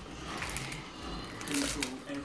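Small Pop Rocks candy packet crinkling as it is handled and torn open by hand, in two short rustles.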